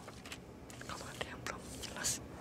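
Faint, indistinct whispering with soft hissy sounds over low room tone.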